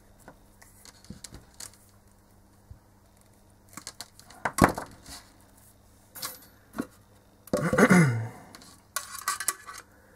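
Tools and small parts handled on a workbench: quiet at first, then a few sharp clicks and knocks, the loudest about halfway through, and a longer clatter a little later as things are moved about and a plastic enclosure is set down.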